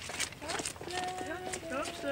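High children's voices calling and chattering over a few irregular clopping knocks on the street.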